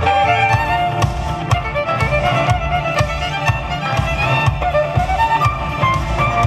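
Three violins playing a fast rock tune in harmony over a backing track with a deep bass line and a steady beat.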